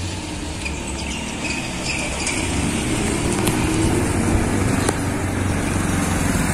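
Small motor scooter engine approaching and passing close by, its sound growing louder over the first four seconds and then easing slightly.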